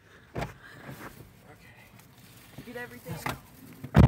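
Quiet car cabin with two soft thumps, one near the start and one near the end, and a brief faint voice between them.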